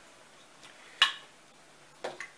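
One sharp click of hard plastic about a second in, as a boat throttle control box and its cable connector are handled; otherwise quiet.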